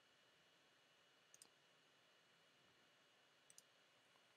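Near silence with two faint computer mouse clicks, one about a second and a half in and one near the end, each a quick pair of ticks.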